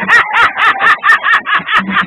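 A fast, even run of short yelping calls, about four to five a second, like a dog barking in rapid yips. It is set over a beat with a low thump recurring under it.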